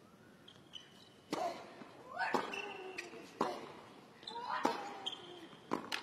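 Tennis rally on a hard court: a serve and four more racket strikes on the ball, about one a second, with a player's grunt on every other shot and short squeaks of shoes on the court.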